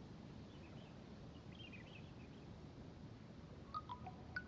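Near silence: faint outdoor background hum with a few faint, high bird chirps. Near the end, the first soft, chime-like notes of mallet-percussion music come in.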